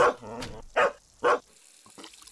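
A dog barking, several short barks about half a second apart.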